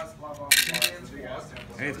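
A short clatter of small game pieces such as tokens or dice, about half a second in, with voices murmuring around it.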